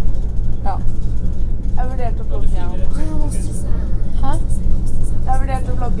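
Steady low rumble of a passenger train running, heard from inside the carriage, with voices over it.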